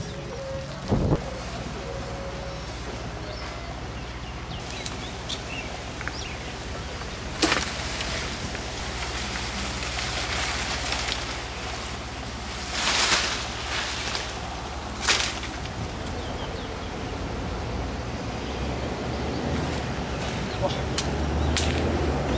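Outdoor sound with a steady low wind rumble on the microphone, brief rustles of leaves and branches and a few sharp knocks as someone climbs through bushes over a wall.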